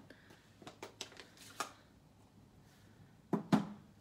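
Plastic ink pad cases handled and set down on a craft table: a few light clicks and rustles, then two sharp knocks near the end as a pad is put down.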